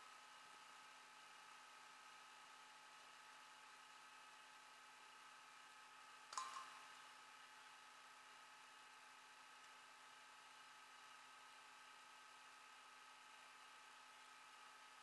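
Near silence with a faint steady electrical hum, broken once about six seconds in by a single short, sharp click.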